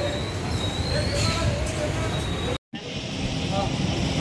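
Outdoor street noise of traffic and motorbikes with people talking, plus a thin, high, steady squeal for the first second and a half. The sound cuts out completely for a moment a little past halfway, then the traffic noise resumes.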